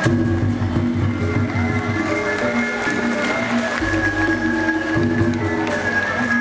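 A live Sundanese gamelan ensemble playing: tuned notes in a repeating melody, a long high held line above them, and low beats underneath.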